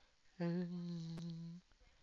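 A person humming one steady, unbroken note for a little over a second, with a short click partway through.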